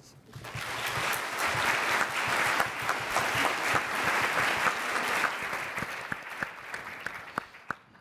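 An audience applauding. It builds up about half a second in and thins to a few scattered claps before dying away near the end.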